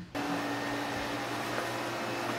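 A steady rushing noise with a low hum switches on abruptly just after the start and holds level: the opening sound of a music video as it begins playing back.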